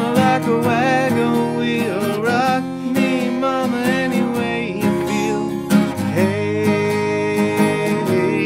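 Acoustic guitar strummed steadily in a country rhythm while a man sings along.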